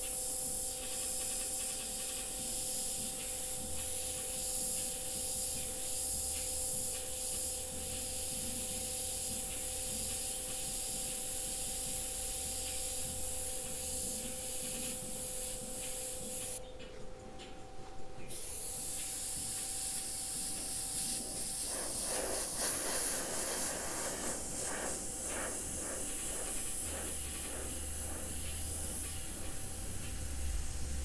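Gravity-feed airbrush spraying paint in a steady hiss, with the air cut off for a second or two about two-thirds of the way through before it sprays again.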